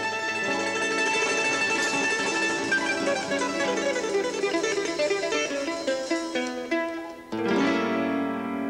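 Live instrumental music led by a guitarra baiana, a small electric mandolin-like guitar, playing fast runs of plucked notes over the band's accompaniment. The sound dips briefly about seven seconds in, and a loud chord follows.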